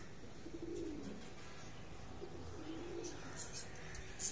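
Domestic pigeons cooing: a series of low, wavering coos that repeat every second or so.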